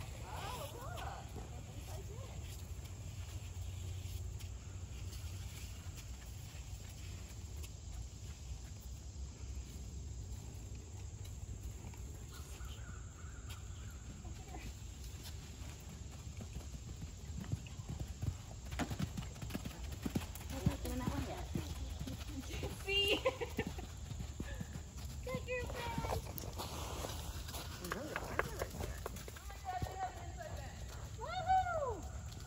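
Hoofbeats of a pony ridden around a sand arena, muffled by the soft footing and more distinct past the middle, over a steady low rumble.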